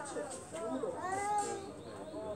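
Faint voices of other people talking in the background, overlapping and indistinct.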